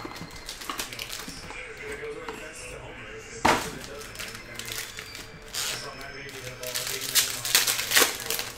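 Foil trading-card packs handled and pulled from a cardboard box, with crinkling and scattered clicks and a sharp click about three and a half seconds in. Background music plays throughout.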